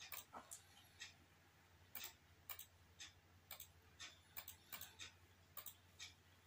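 Computer mouse clicking in quick, irregular clicks, some in close pairs, as bullet chess moves are played, over a faint steady low hum.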